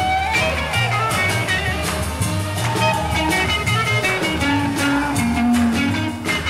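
Live 1960s Motown soul band playing an instrumental passage: drums keep a steady beat under guitar and other pitched instruments.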